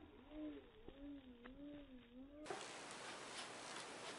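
A low, wavering voice, rising and falling smoothly in pitch for about two and a half seconds, then cut off sharply. A faint hiss with a few light taps follows.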